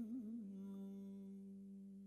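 Male voice singing the last note of an Iranian folk song: a wavering, ornamented line that about half a second in settles into one long held note, fading away.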